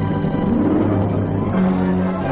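Orchestral film score: sustained low chords, with the pitch shifting a little before the end.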